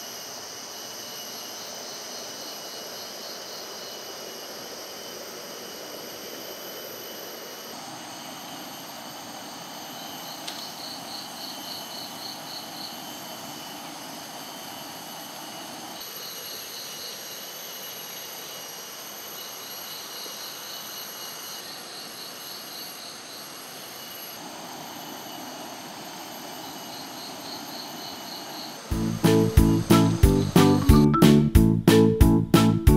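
Tropical rainforest insect chorus: several steady high-pitched buzzes, with a rapid pulsing trill that starts and stops several times. Music comes in loudly near the end.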